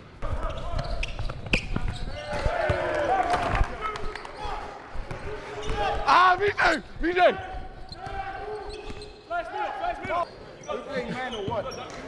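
Basketball play on a hardwood gym floor: sneakers squeaking in short, high-pitched chirps, knocks of the ball bouncing and feet landing, and a low rumble in the first few seconds.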